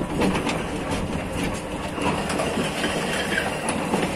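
Rebar threading machine running, its rotating chaser die head cutting a thread onto the end of a ribbed steel TMT bar: a steady motor hum under the grinding of the cut, with a higher grinding note setting in about halfway through.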